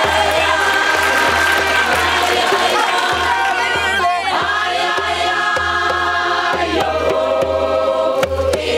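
A group of voices singing together in sustained harmony, with a drum pulsing underneath.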